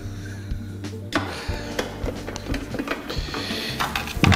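Soft background music with steady low tones, with a few light clicks and knocks of plastic kitchenware being handled.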